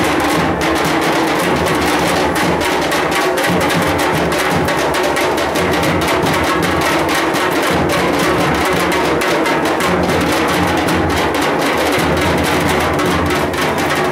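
Dhol-tasha drumming: loud, unbroken, rapid drum strokes.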